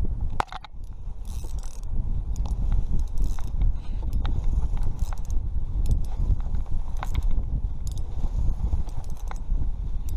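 Daiwa Fuego spinning reel being cranked to take up line on a hooked fish, with irregular mechanical clicks and ticks from the reel, over a heavy rumble of wind on the microphone.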